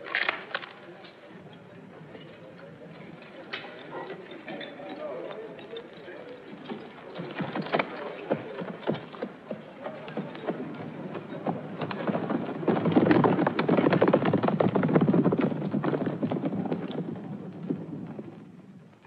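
Hooves of several horses clip-clopping on a dirt yard as mounted riders pass. The sound builds to its loudest a little after the middle, then fades away near the end.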